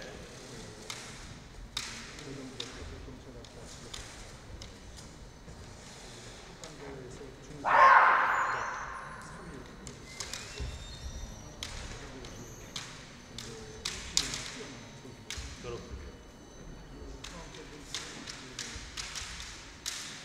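Kendo match: bamboo shinai tapping and clacking against each other, with footwork on a wooden floor, as a scattering of sharp clicks. About eight seconds in, one loud drawn-out kiai shout from a fighter.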